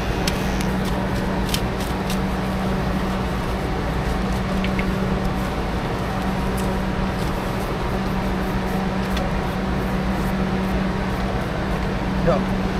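Electric hair clipper running with a steady buzzing hum, with a few light clicks over it.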